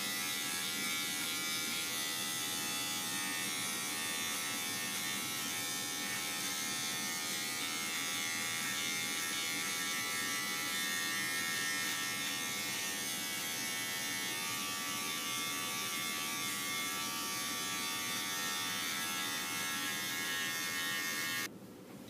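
Battery-operated electric beard trimmer with a 1/8-inch guard attachment running steadily as it cuts through a dry beard, a constant motor buzz that is switched off near the end.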